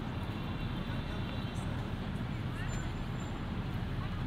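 Steady low outdoor background rumble of distant traffic.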